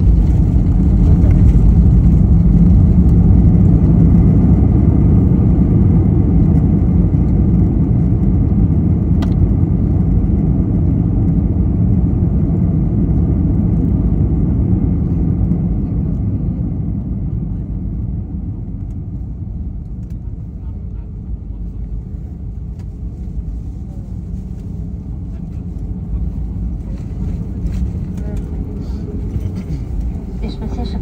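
An airliner's engines and wheels heard from inside the cabin during the landing rollout: a loud, low rumble that fades over the first twenty seconds as the aircraft slows, then settles to a quieter steady noise at taxi speed.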